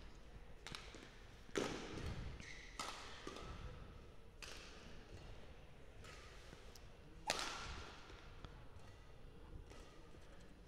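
Badminton rackets striking the shuttlecock in a rally: a handful of sharp hits spaced a second or more apart, the loudest about seven seconds in, with brief squeaks of players' shoes on the court between them.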